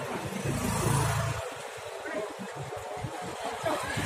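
Outdoor street noise: indistinct voices of people in the street over a low rumble that swells about a second in and then eases.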